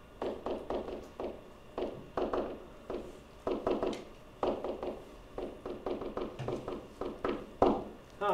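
A pen or stylus writing by hand on a hard writing surface: a quick, uneven run of short taps and strokes in small clusters as a few words are written out.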